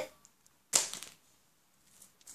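One short, sharp swish about three-quarters of a second in, as a tape-covered paper bookmark is picked up off a tile floor.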